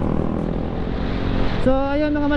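Wind and engine noise from a motor scooter riding along, picked up by the onboard camera's microphone. A man's voice starts up shortly before the end.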